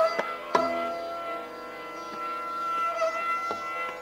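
Sarangi holding one long, steady bowed note in raag Kaunsi Kanada, with a couple of tabla strokes near the start.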